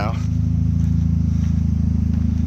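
A vehicle engine idling with a steady, even low hum that does not change in pitch or level.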